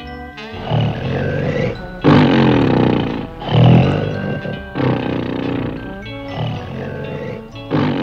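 Loud cartoon snoring: a run of long, rasping snores, about one every second and a half, with music underneath.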